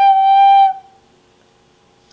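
A wooden end-blown flute holds one long, steady note at the end of a phrase; the note stops about three-quarters of a second in.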